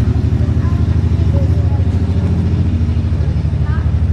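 An engine or motor running steadily: a loud low hum with a fast, even pulse.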